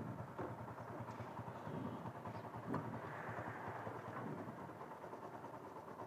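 Motorcycle engine idling faintly and steadily while it is checked for exhaust emissions.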